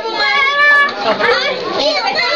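A group of young children talking and calling out over one another in high-pitched voices, with no single voice standing clear.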